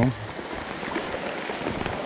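Heavy rain falling on a small stream and its banks, a steady hiss of many drops.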